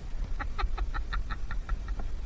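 A rapid run of short, evenly spaced animal calls, about eight a second, lasting about a second and a half, over a steady low wind rumble.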